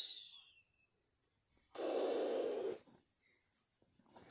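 A single breathy exhale or sigh, about a second long, midway through.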